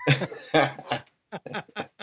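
Men laughing in short, breathy bursts, with a brief pause about a second in.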